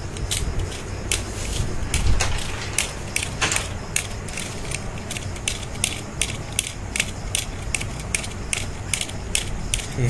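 Bicycle bottle dynamo spun by hand, its works clicking irregularly about three times a second over a low rumble, as it generates current to charge a phone.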